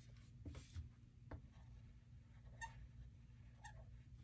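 Near silence with a few faint, short scratches of a felt-tip marker stroking over a paper card as a circle is coloured in.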